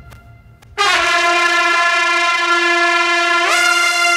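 A loud, sustained horn-like chord of several notes cuts in under a second in, after the preceding music has faded out, and holds steady. Near the end some of its notes slide up to a higher pitch.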